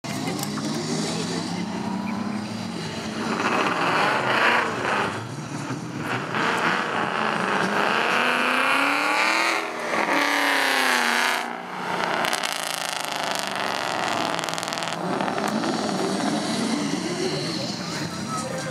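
Drag-race car engines revving at the start line, their pitch climbing and falling repeatedly, with the loudest revving in the middle stretch.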